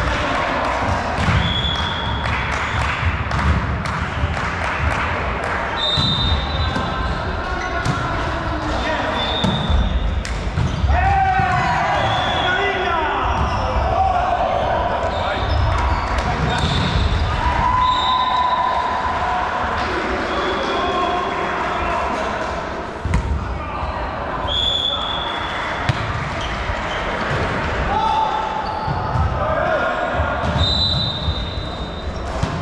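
Indoor volleyball play in a reverberant sports hall: the ball is struck and thuds on the floor again and again, sneakers give short high squeaks on the court, and players call out.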